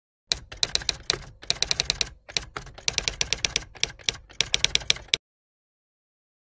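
Typewriter keystroke sound effect: a rapid, uneven run of sharp clicks that starts just after the cut and stops suddenly about five seconds in.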